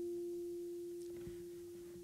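An acoustic guitar chord ringing out and fading after a strum. The upper notes die away about halfway through, leaving one mid-pitched note that keeps sounding more and more faintly.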